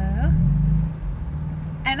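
BMW M4 Convertible's twin-turbo straight-six idling steadily with a low hum while the car creeps backwards in reverse, heard from inside the cabin.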